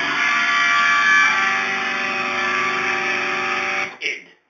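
Electric guitar played through an amplifier: a chord left ringing and sustaining steadily, which cuts off suddenly near the end.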